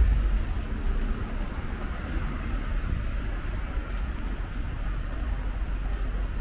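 City street ambience: a steady low rumble with light road traffic.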